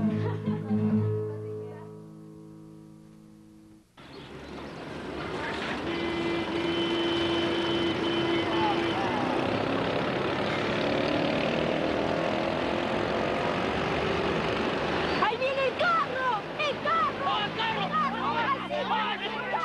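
Background music fades out over the first four seconds. It gives way to a steady outdoor rumble of vehicle noise, with a short held tone a few seconds in, and excited voices in the last few seconds.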